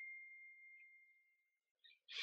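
Near silence, with a faint, thin, steady high tone that fades out shortly before the end.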